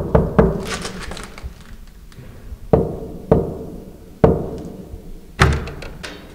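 Knuckles knocking on an apartment door: three quick knocks at the start, then four single knocks spaced out over the next few seconds.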